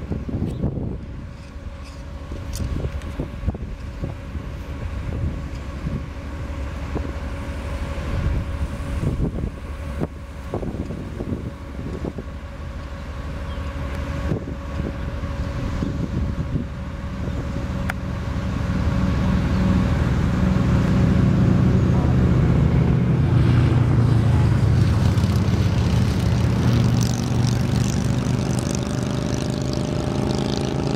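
Gusty wind buffets the microphone in irregular low rumbles. Part way through, an engine grows louder and then runs steadily, becoming the loudest sound to the end.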